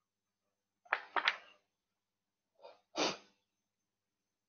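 A person sneezing twice, about a second in and again just before three seconds.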